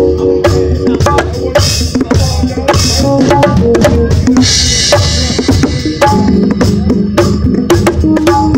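LP bongos struck by hand in a quick, steady pattern, playing along with a live band's drum kit and held bass notes.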